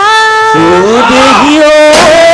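Bihu vocals without drumming: a held sung note that breaks off about half a second in, followed by a voice sliding upward in pitch.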